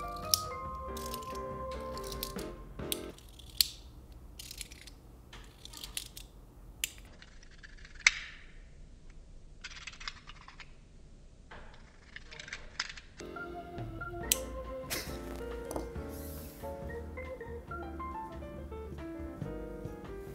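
Background music for the first few seconds and again from about 13 seconds on. In between, a string of sharp, irregular clicks, roughly one every half second to second, from a retractable utility knife's blade slider being pushed in and out.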